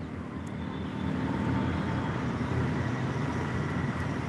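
Steady rush of road vehicle noise, swelling slightly about a second in and then holding even.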